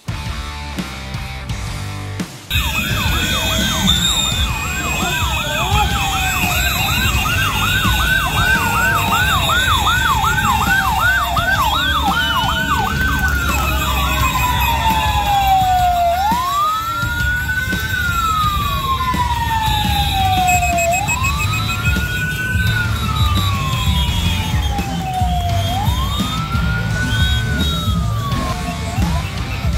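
Several vehicle sirens sounding together. They start abruptly about two seconds in with a fast, overlapping yelp, then slow to a long rising-and-falling wail that repeats about every five seconds.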